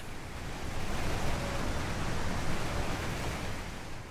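The song stops and a steady rushing noise remains, with a low rumble under it and no tune or voice.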